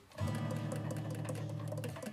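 A low, steady note held on a 1957 Buffet Super Dynaction alto saxophone, starting a fraction of a second in and stopping just before the end.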